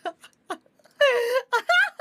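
A woman's high-pitched voice talking in short phrases after the music has stopped, with one drawn-out syllable about a second in.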